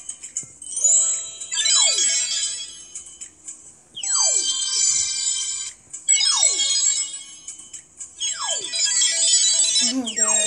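Twinkly electronic sound effect from a children's storybook app: a quick falling whistle under a shimmer of bright chime tones, heard four times about two seconds apart.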